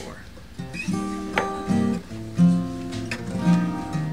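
Acoustic guitar chords and picked notes starting about half a second in, changing every half second or so.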